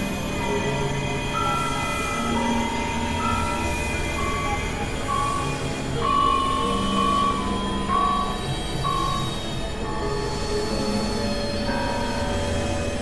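Experimental electronic drone music: held synthesizer tones step slowly from pitch to pitch over a dense, noisy drone.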